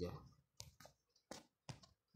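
A few faint, sharp clicks, about five in just over a second, in a quiet pause after a word trails off.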